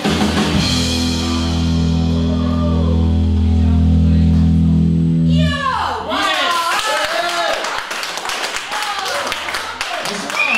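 Electric guitar and bass guitar holding a final chord that rings steadily for about five seconds and then cuts off, ending a blues-rock song. Audience shouts and clapping follow.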